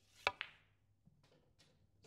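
Snooker cue tip striking the cue ball in a screw-back shot with a little right-hand side. A split second later comes a second, smaller click as the cue ball hits the black.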